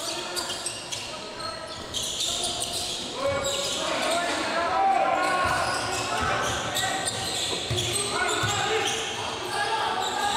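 Basketball game play on a hardwood gym floor: the ball bouncing in repeated thuds, short sneaker squeaks, and indistinct shouts from players and bench, all echoing in a large hall.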